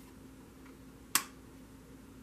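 A tarot card laid down onto a spread of cards: one sharp snap about a second in.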